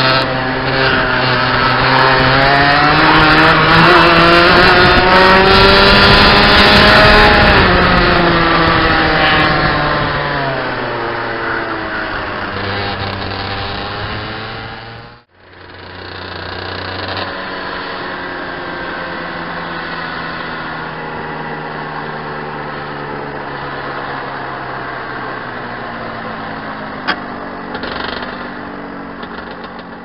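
Rotax 125cc two-stroke kart engine heard onboard, its pitch rising to a peak about seven seconds in, then falling away as the revs drop. About halfway through the sound cuts out abruptly, then returns as a lower, steadier engine note.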